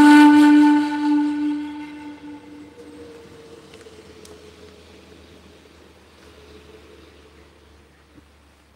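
Panpipes holding a long final note that fades out about two and a half seconds in. A fainter, higher held tone then lingers and slowly dies away.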